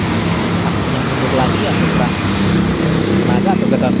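Diesel engine of a heavily loaded dump truck pulling uphill as it passes close by, a steady low drone.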